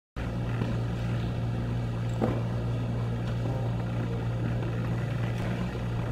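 A steady low hum of background noise, with one faint knock about two seconds in.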